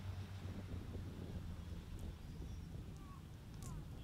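Faint outdoor ambience from a trackside microphone: wind noise over a low steady hum, with a couple of faint short chirps about three seconds in.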